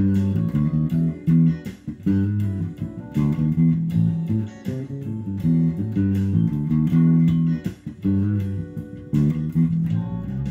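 Fender '60s Jazz Bass electric bass played fingerstyle: a solo line of plucked single notes that moves quickly through the low register.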